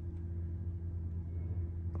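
Steady low hum of an HGV's diesel engine idling, heard from inside the cab.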